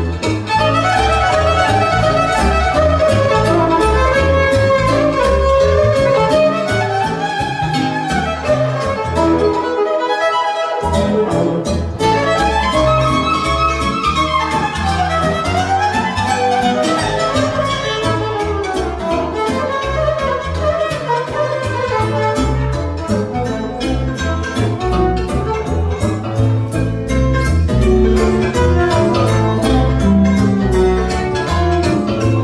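Violin playing a melody with sliding notes over live band accompaniment with a steady beat. The bass and beat drop out for about a second around ten seconds in, then come back.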